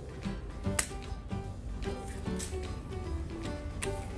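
Hand bypass pruning shears snipping through small mandarin branches: two sharp clicks, about a second in and near the end, over steady background music.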